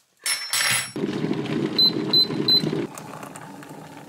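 Digital electric kettle rumbling at the boil, then cutting out, with three short high beeps just before it stops. This is the kettle signalling that the water is ready. Hot water then starts to pour into a ceramic mug near the end.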